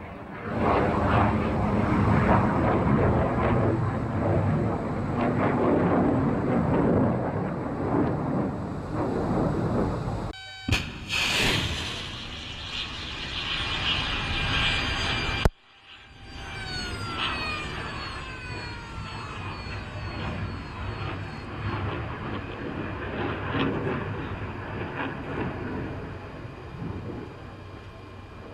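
A ship-launched missile's rocket motor, heard as a dense rushing roar, broken by abrupt cuts about ten and fifteen seconds in. After the second cut, falling whines sound over a steady rush of noise.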